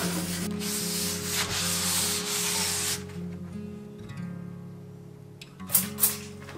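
Cloth rubbing back and forth on a wooden shelf as it is wiped down, a dense scrubbing hiss for about the first three seconds, then quieter. Soft guitar music plays underneath, and a short sharp swish comes near the end.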